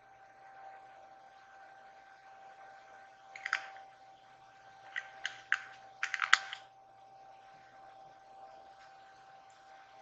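Light clicks and taps of makeup items being handled, in three small clusters about three and a half, five and six seconds in, the last the loudest. A faint steady high tone sits under them.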